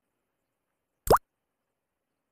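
A single short, rising 'bloop' pop about a second in: an edited-in sound effect.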